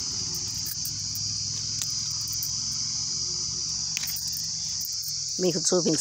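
Steady high-pitched insect chorus that runs without a break, with a person's voice briefly near the end.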